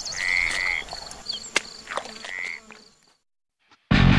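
Night-time nature ambience: two croaking frog-like calls over a steady high insect buzz, with a sharp click about halfway through. It fades out, and loud heavy metal guitar music starts right at the end.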